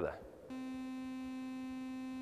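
Synthesizer sounding one steady note with sine, sawtooth, square and triangle waves mixed together. The note starts about half a second in and holds.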